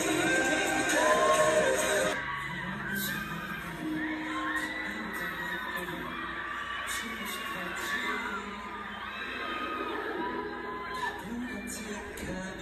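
Live concert recording played back: music with a crowd of fans screaming and cheering. About two seconds in it cuts to a quieter, slower ballad sung live by a male singer, with the crowd's screams still heard over it.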